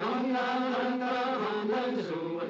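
A group of men's voices chanting or singing together in long, held notes.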